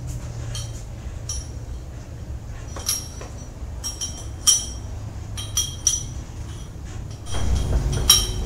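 A short iron bar and its snap clip being hooked onto the top pulley of a cable machine: a series of sharp, ringing metal clinks, irregularly spaced, starting about three seconds in.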